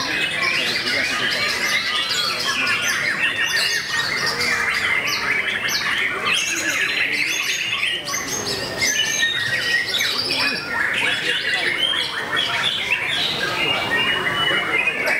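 A white-rumped shama singing hard in its contest cage: a long, unbroken run of rapid, varied chirps, whistles, trills and harsh notes, with other caged birds singing around it.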